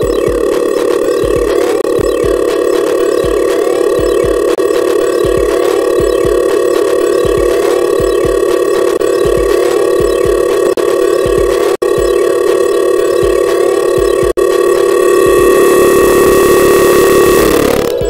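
Live-coded electronic music from TidalCycles and SuperCollider: a loud sustained buzzing drone with a repeating low bass pulse and small rising blips. The drone swells over the last few seconds and then cuts off.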